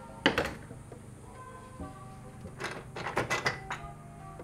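Plastic front grille of a 2005 Toyota 4Runner being pulled free of the front end: a quick cluster of clacks and knocks about two-thirds of the way in, over steady background music.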